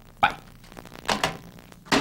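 A few short knocks and clicks, the first about a quarter second in: a desk telephone's handset being hung up at the end of a call.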